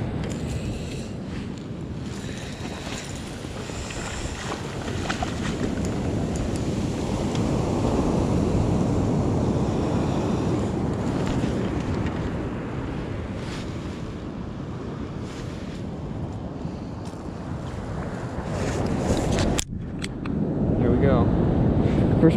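Surf washing up the beach, with wind rumbling on the microphone; the wash swells about midway and eases off again. There is a brief sudden drop-out near the end.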